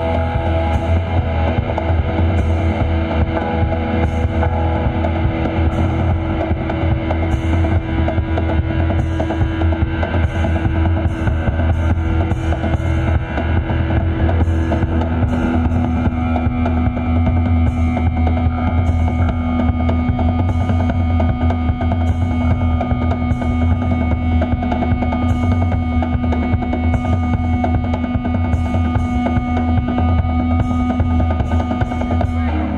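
Live band playing a heavy, droning passage: drum kit beating steadily over a constant deep bass drone, with long held notes on top; the main held note drops to a lower pitch about halfway through.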